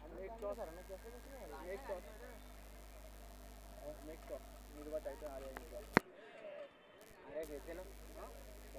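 Faint, indistinct voices in the background over a steady low electrical hum. About six seconds in, a sharp click cuts the sound out for about a second and a half before it returns.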